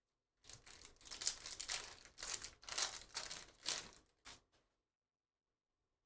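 Wrapper of a Panini Prizm trading card pack being torn open and crinkled by hand: a run of crackling, rustling bursts lasting about four seconds that stops suddenly.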